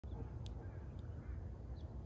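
Faint outdoor ambience: a low, steady rumble of wind on the microphone, with a brief high chirp about half a second in and a couple of fainter short calls, like distant birds.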